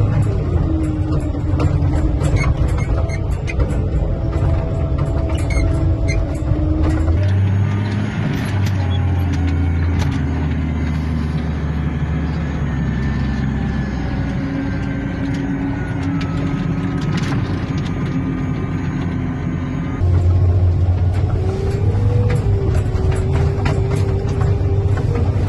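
Snowplow vehicle engine running steadily, heard from inside the cab as its front blade pushes snow, with a low rumble and slowly shifting engine tones. The sound changes abruptly twice, about a third of the way in and near the end, as a different plow vehicle is heard.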